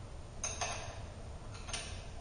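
Two short bursts of clicking about a second apart, from a wrench tightening the hold-down bolts of the movable machine on a shaft-alignment demonstration rig after it has been shifted into alignment.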